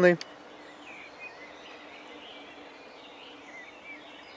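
Low steady outdoor background hiss with a few faint, distant bird chirps.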